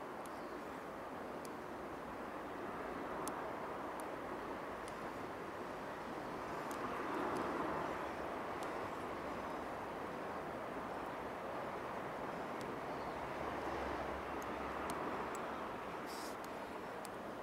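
Distant vehicle noise, a steady background rumble that swells and fades a few times, with a few faint small clicks from hands handling thread.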